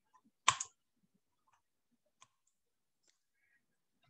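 A short, sharp click about half a second in, followed by a faint tick a little after two seconds.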